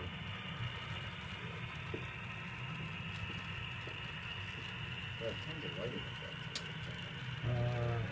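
HO scale model diesel locomotive running along the layout: a steady low hum with a faint high whine, and soft voices in the background.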